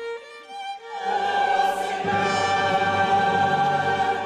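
A mixed choir and chamber orchestra performing sacred music. A quiet single string line gives way about a second in to the full choir and strings entering loudly together, holding sustained chords with the low strings joining below.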